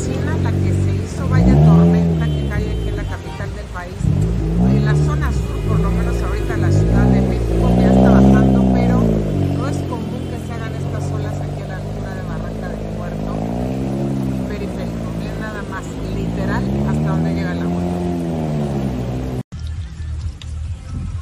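A person talking, their voice rising and falling in pitch, over the low rumble of car traffic moving through floodwater; the rumble fades about halfway through. The sound cuts out sharply just before the end.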